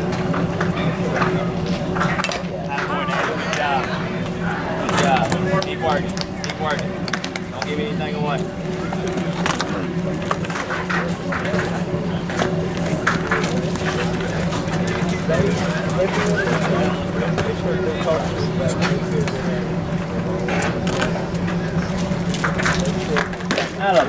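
Indistinct distant voices of players and spectators over a steady low hum, with a few faint clicks.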